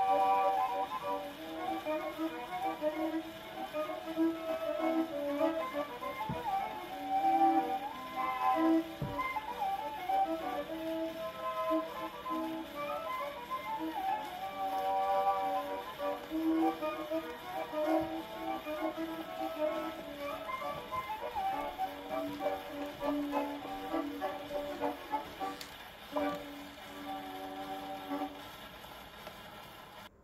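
Violin and accordion playing a waltz, reproduced acoustically from a 1918 Victor shellac 78 on an Orthophonic Victrola, with steady record surface noise beneath. The music grows quieter in the last few seconds.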